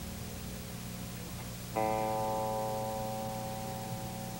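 Electric guitar through an amplifier between songs: a steady low amp hum, then the guitar struck once about two seconds in and left ringing, fading slowly.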